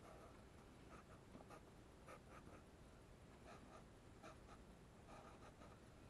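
Faint scratching of a pastel pencil on drawing paper, in short irregular strokes that come in small clusters with brief pauses between them.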